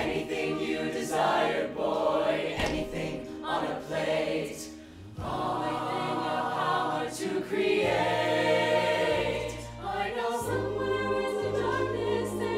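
A large mixed choir of men and women singing together in harmony, with a brief dip in volume about five seconds in.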